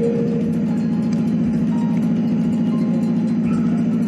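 A steady low droning hum with a fast, even pulse.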